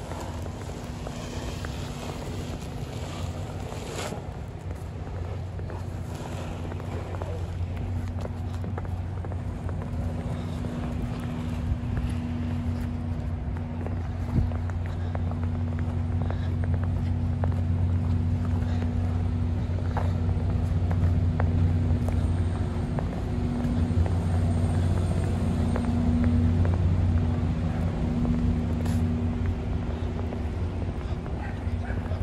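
Steady low hum of idling diesel engines from parked semi-trucks, growing louder over the first twenty seconds or so, with faint steps in snow over it.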